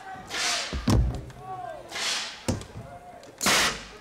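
Compressed-air launchers firing: three short, sharp hissing blasts of air, the last and loudest near the end, with a heavy thump just under a second in.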